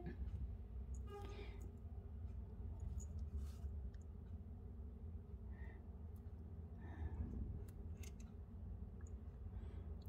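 Faint scattered clicks and rustles of glass seed beads and nylon monofilament thread being handled close to the microphone, over a low steady hum.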